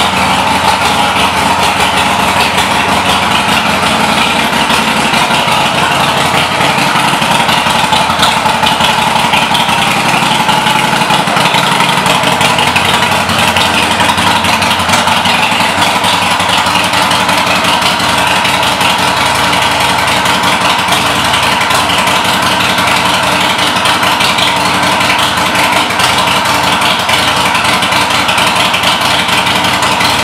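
Harley-Davidson Forty-Eight's 1200 cc air-cooled V-twin idling steadily.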